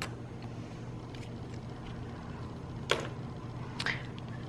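Hands handling a paper planner and stickers: a few light taps and rustles, the loudest about three seconds in, over a steady low hum.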